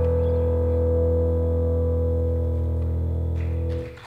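Live band holding a sustained chord on accordion, guitars and keyboard, steady and unchanging, which cuts off sharply near the end.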